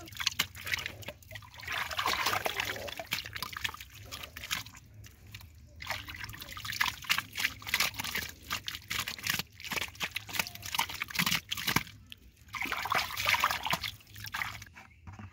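Hands scooping and stirring muddy water and wet mud in a small water-filled hole, giving irregular splashes, sloshes and squelches, with a thicker run of splashing about two seconds in and again near the end.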